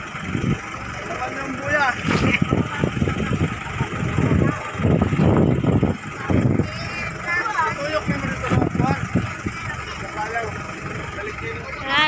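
Voices talking in snatches over the steady drone of an outrigger fishing boat's engine.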